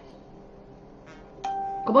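A single electronic chime, one steady ding held for about half a second, starting about one and a half seconds in.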